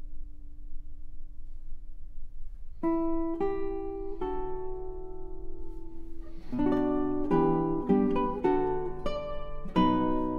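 Solo classical guitar played slowly. A held note dies away first, then single plucked notes ring out from about three seconds in, and fuller overlapping chords come in from about six and a half seconds.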